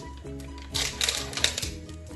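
Background music, with a quick run of knocks and scrapes from a plastic measuring jug being handled, a utensil inside it, from about three-quarters of a second in to past halfway.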